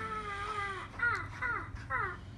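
High-pitched calls: one long wavering note that ends a little under a second in, then three short falling cries close together.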